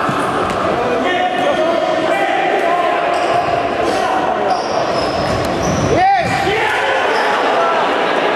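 Futsal play on an indoor court: shoes squeaking on the hall floor, the ball being kicked and bouncing, and players calling out, all echoing in the hall. The loudest sound is a sharp rising-and-falling squeal about six seconds in.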